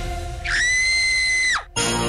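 Background music, then a high whistle-like sound effect that slides up, holds steady for about a second and drops away sharply. A new music cue comes in right after it.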